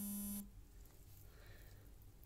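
A mobile phone vibrating: a short, steady electric buzz lasting about half a second at the start, then a faint room hush.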